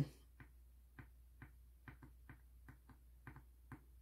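Faint light ticks, about two a second and slightly uneven: a gel pen's tip tapping and skipping on a hard, resin-coated board as short leaf strokes are drawn.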